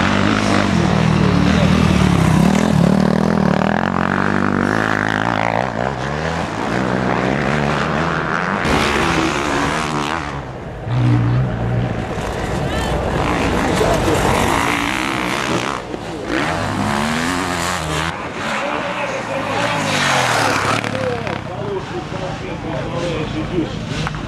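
Motocross motorcycle engines revving, the pitch rising and falling over and over as the bikes accelerate, jump and back off, with several bikes heard at once.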